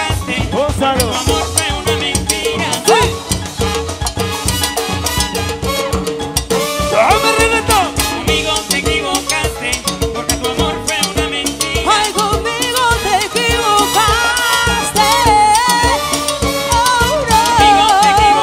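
Live salsa band playing loudly in a steady dance rhythm, with drum kit, timbales and keyboard.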